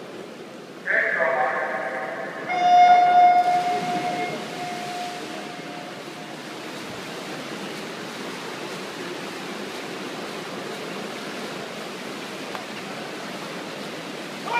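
A brief call over the loudspeaker in a reverberant pool hall, then about a second and a half later the electronic start signal of a swim race: one long beep that rings on in the hall for a few seconds. Then a steady wash of noise from the hall and the swimmers' splashing.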